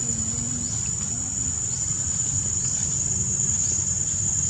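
Insects in the forest keep up one steady, high-pitched drone, with faint short rising chirps about once a second, over a low steady rumble.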